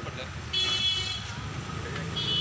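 A vehicle horn sounds once, a high tone of under a second about half a second in, over a steady low rumble.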